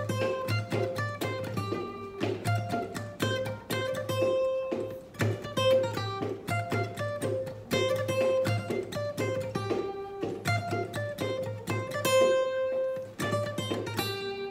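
Acoustic guitar, capoed at the third fret, playing a picked single-note riff over and over, each quick note ringing clearly. This is the song's chorus riff, which starts just after the first beat of the bar.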